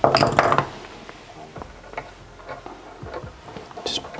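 Small metal handling sounds at a workbench: a clatter as wire scissors are put down near the start, then faint scattered clicks as the cut stainless steel wire is wrapped around its clip.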